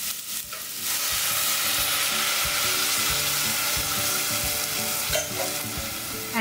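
Vegetable stock poured into a hot stainless steel sauté pan of sautéed squash and onions, sizzling as it hits the hot metal. The hiss starts about a second in, holds steady with scattered pops, and eases slightly near the end.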